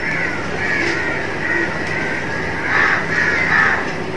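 Birds calling repeatedly.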